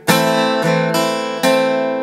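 Steel-string acoustic guitar strummed on an A minor chord. A strong strum comes just after the start, lighter strums follow, and another strong strum lands about one and a half seconds in, each left ringing.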